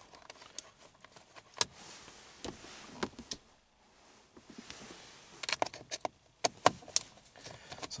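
Scattered clicks and light metallic clatter of hand tools and small metal parts being handled: a screwdriver and bits picked up from among keys on a car seat while the steering-wheel cruise control buttons are taken off. The sharpest click comes about one and a half seconds in, with a quick run of clicks near the end.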